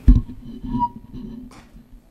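Microphone handling noise: a loud low thump, then softer knocks and rustling, and a sharp click about one and a half seconds in.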